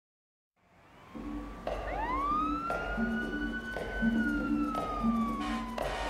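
Song intro: a siren sound wails over the backing track, rising steeply about two seconds in, holding, then slowly falling. Under it a beat hits about once a second over a repeating low two-note figure.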